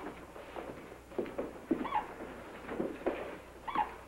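Cardioscope heart monitor blipping about every two seconds, each blip a short chirp that dips in pitch, with softer low blips between: a slow, very weak heart rhythm during a cardiac arrest.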